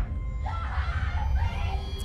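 Film soundtrack: score music over a deep, steady low rumble.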